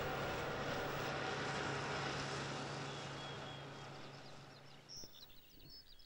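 A tractor pulling a rear-mounted mower across grass, running steadily with a constant engine hum and then fading away over the second half. Near the end a few short, high bird chirps come in.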